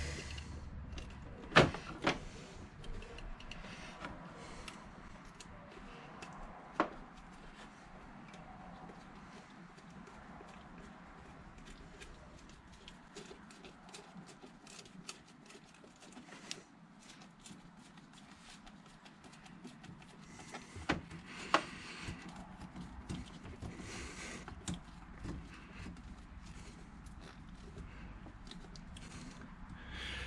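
Light scattered clicks and clinks of hands and a hand tool tightening the clamp that holds the new carburettor on the scooter's inlet, with a few sharper clicks near the start and again about two-thirds through.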